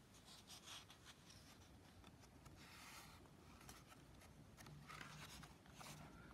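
Faint paper rustling as a page of a book is handled and turned, in soft scratchy bursts about a second in, around three seconds and again near five seconds.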